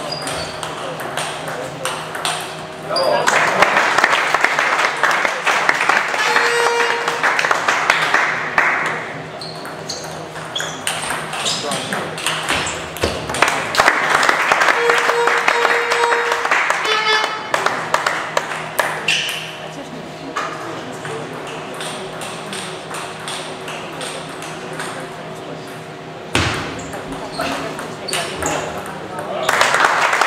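Table tennis ball clicking off the bats and bouncing on the table during rallies, with spectators' voices in the hall.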